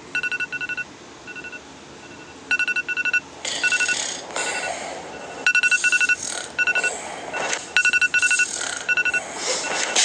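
A rapid run of short electronic beeps at one pitch, coming in uneven clusters. From about three and a half seconds in, harsh noisy bursts cut in between the beeps.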